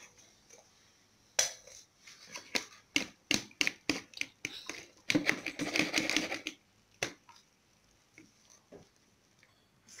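Boiled zobo (roselle hibiscus) leaves squelching as they are squeezed by hand to press out the juice: a run of irregular wet clicks and squishes starting about a second and a half in, thickest around five to six seconds in, stopping about seven seconds in.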